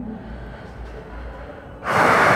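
Faint room noise, then near the end a sudden loud, breathy rush of noise begins: a man's sharp breath into a close microphone.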